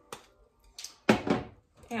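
Kitchenware being handled at a stove: a light click at the start, then a louder, brief clatter about a second in.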